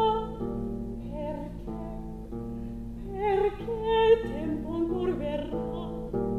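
Soprano singing a slow lullaby-like song with vibrato, accompanied by a theorbo plucking a steady repeating bass figure. Her voice is softer at first and swells louder about three seconds in.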